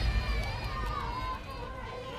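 A deep rumble at the start, fading out, under faint drawn-out human voices calling out.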